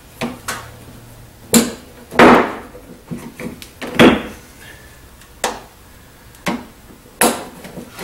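Glue-pull paintless dent repair puller yanking on the fender and snapping its glue tabs free, the dents popping back out of the car's sheet metal. About nine sharp pops come at irregular intervals, the loudest about two seconds in.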